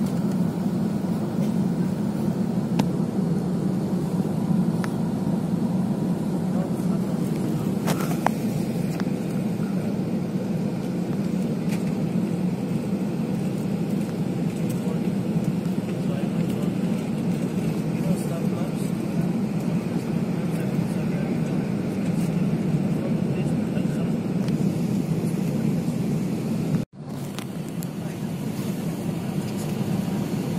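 Steady cabin noise of an airliner in flight: engine and airflow noise inside the cabin, heaviest in the low range. It cuts out abruptly for an instant near the end.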